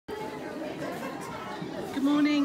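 Crowd chatter: many people talking at once, indistinctly, with no single voice standing out.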